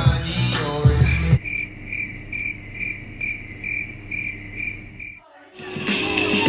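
Background music cuts off abruptly about a second in and a crickets-chirping sound effect plays: evenly spaced high chirps, a little over two a second. After a brief gap, music comes back just before the end.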